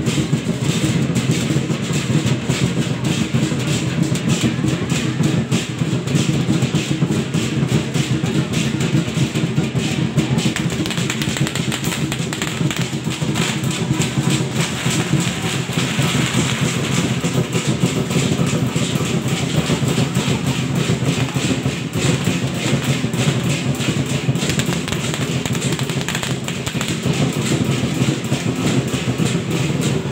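Chinese-style ceremonial percussion: a large drum struck in a fast, continuous rhythm with other percussion, keeping time for the troupe's performance.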